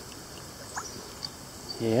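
Faint water trickling and a few drips falling from a rusty iron bayonet just lifted out of a shallow creek on a magnet, over the steady sound of the stream.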